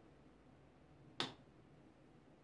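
A single sharp click about a second in, from a small handheld glucometer-kit device clicked close to the microphone, against otherwise near-silent room tone.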